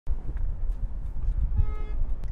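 Low road rumble inside a moving car's cabin, with one short honk from a car horn behind, about one and a half seconds in.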